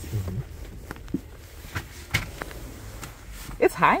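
A few light clicks and knocks from handling and movement in a vehicle seat over quiet room tone, with a brief low murmur at the start and a woman's voice near the end.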